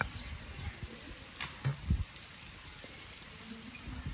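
Light rain falling and dripping on a wet brick lane, with a few low thumps and clicks, the loudest about two seconds in.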